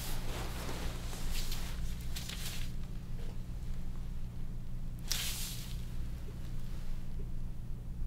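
Gloved hands rubbing and rustling against skin and fabric as the shin of a bent knee is pulled forward and pushed back in anterior and posterior drawer tests. There are a few brief swishes over a steady low hum, and no click or pop from the knee joint.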